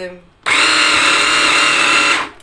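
Braun hand blender running in its chopper bowl attachment, whipping sliced banana and milk: it starts abruptly about half a second in and holds a loud, steady, high-pitched motor whine.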